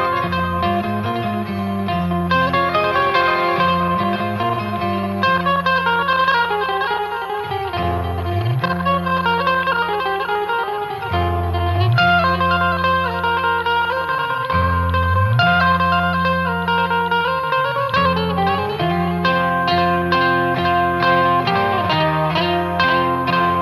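Live instrumental band music: electric guitars pick bright melodic lines over a deep bass part that slides up into each new note every few seconds. Near the end the notes come faster and denser.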